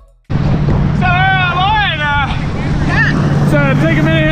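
Towing motorboat's engine running with a steady low drone under wind on the microphone, starting abruptly a moment in, with a voice calling out over it.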